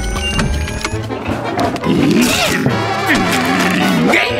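Cartoon soundtrack: background music with clattering sound effects over the first second, then sliding, wobbling comic tones.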